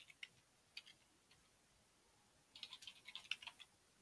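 Faint typing on a computer keyboard: a few keystrokes at the start, then a quick run of keystrokes from about two and a half seconds in.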